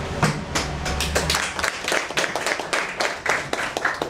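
Audience clapping: a run of quick, uneven hand claps.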